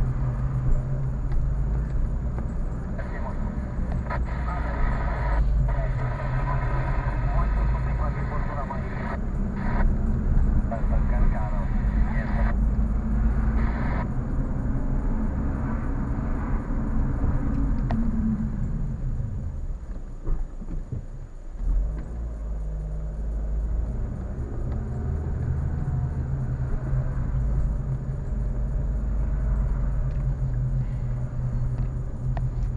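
Car engine and road noise heard from inside the cabin while driving slowly. The engine note drops as the car slows about two-thirds of the way in, dips briefly, then picks up again.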